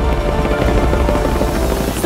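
A suspense drumroll in the music: a fast, steady roll under a rising swell that grows brighter toward the end, building to the winner's reveal.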